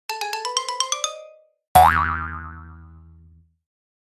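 Cartoon intro sound effects: a quick run of about ten short bright notes climbing in pitch, then a loud boing whose pitch wobbles as it dies away over about a second and a half.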